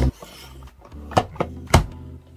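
Hard plastic clicks and knocks as the dustbin is released and pulled out of an Ultenic D5s Pro robot vacuum: three sharp clicks in the second half, the last the loudest.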